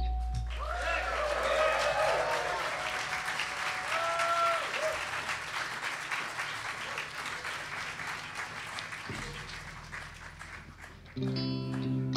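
Audience applauding and cheering after a song ends, slowly fading away. About eleven seconds in, electric guitars strike up the next song.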